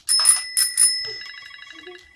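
A bell rings twice, about half a second apart, and its tone fades away, followed by a fast even trill. It is the signal that the ten-second turn is over.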